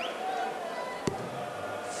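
Steady crowd murmur in a large hall, with one sharp thud about a second in: a steel-tip dart striking the bristle dartboard.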